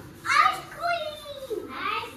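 Small children's voices calling out in a few short, sing-song bursts.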